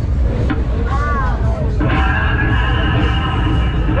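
Loud funfair din: a constant low rumble under music, with a steady electronic-sounding chord coming in about two seconds in and holding.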